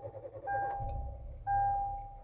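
A 2012 Hyundai Accent's dashboard warning chime sounding about once a second, one steady tone each time, while the four-cylinder engine starts and settles to idle around 1000 rpm.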